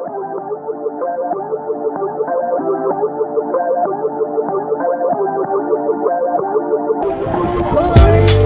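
Background music: a melodic track muffled as though filtered, slowly growing louder, that opens up to full brightness about seven seconds in.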